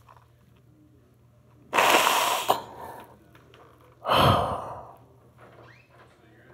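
A man breathing out heavily twice into his hands held over his face, once about two seconds in and again about four seconds in, as he is overcome with emotion.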